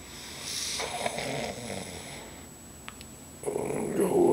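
A man's long, deep breath lasting about two seconds, followed by a brief click, then a low voiced groan beginning near the end.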